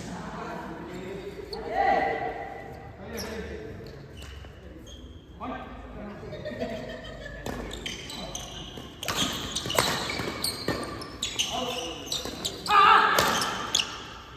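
Badminton rally: sharp racket-on-shuttlecock hits, sparse at first and coming fast in the second half, echoing in a large sports hall. Players' voices are mixed in, loudest in a shout near the end.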